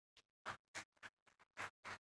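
Near silence, with a string of faint, soft clicks spread unevenly through it.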